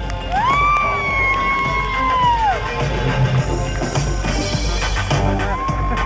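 Crowd of spectators cheering runners in at a marathon finish, over loud music. A long high-pitched whoop rises near the start, holds for about two seconds and drops away.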